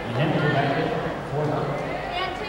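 Voices echoing in a basketball gym, with one man's low voice the loudest, heard twice: soon after the start and again just past the middle.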